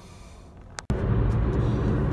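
Quiet car interior that cuts off suddenly just before a second in, giving way to steady road and engine noise heard inside a moving car's cabin.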